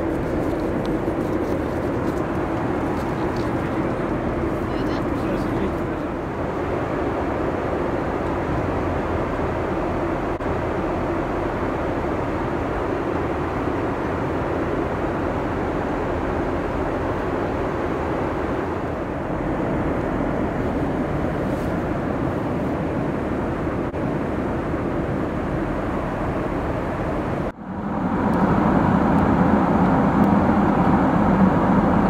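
Steady cabin noise of a Boeing 747-8 in cruise: an even rush of airflow and engine noise. About 27 seconds in it cuts off abruptly and resumes as a slightly louder steady rush.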